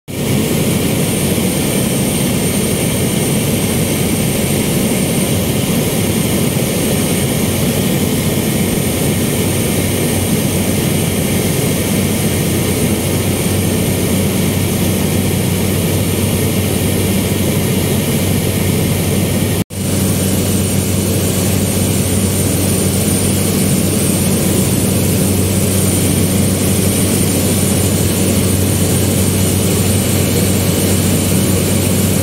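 The engine and propeller of a single-engine propeller aircraft running with a steady drone in flight, heard from inside the cockpit. The sound cuts out for an instant about two-thirds of the way through.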